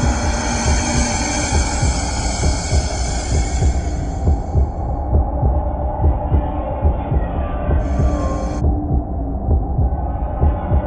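Horror sound design: a low, heartbeat-like throbbing pulse under a dark drone. A higher layer above it fades out about halfway through, and a short burst of hiss comes in about eight seconds in.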